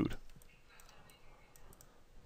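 A few faint, scattered clicks of a computer mouse in a quiet room.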